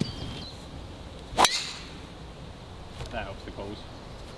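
A driver striking a golf ball off the tee: one sharp crack about a second and a half in, with a brief ringing tail.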